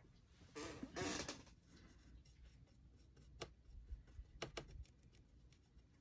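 Faint handling sounds of a paintbrush being picked up and brought to a blob of gesso on a cutting mat: a short rustle about a second in, then three light clicks a little past the middle.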